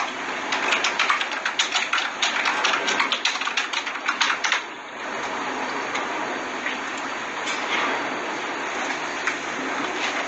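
Fast typing on a computer keyboard, a quick run of key clicks for about the first five seconds, then a steady hiss.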